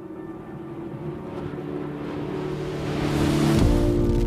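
Film soundtrack: steady low drone notes under a whooshing swell that builds for about three seconds, then gives way near the end to a deep bass boom.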